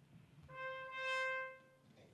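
Solo trumpet playing two notes on the same pitch, C and C ('do-do'), the second held a little longer. It is the motif that spells a name's initials in letter notation.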